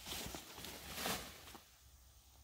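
Armful of leafy sweet potato vines rustling as it is carried and dropped into a tractor's loader bucket, loudest about a second in, then dying away.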